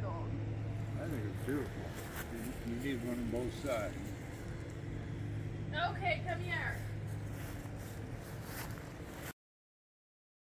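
Faint, scattered speech over a steady low hum, with a few light clicks. All of it cuts off suddenly to dead silence near the end.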